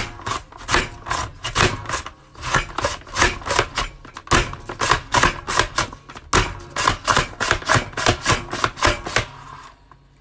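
Upright mandoline vegetable chopper slicing a raw potato into french fries as its handle is worked in quick strokes: a rapid run of crisp chopping clicks, about three or four a second, that stops near the end.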